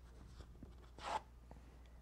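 Felt shapes being peeled off a sticky cutting mat: faint rubbing with a brief soft rasp about a second in, over a low room hum.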